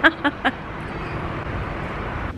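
Steady outdoor street noise, with a few short laughs in the first half second.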